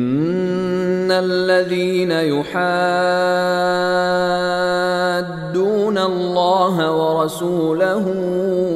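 A man's voice reciting the Quran in Arabic in melodic tajweed style. It holds long sustained notes, then moves into wavering, ornamented turns near the end.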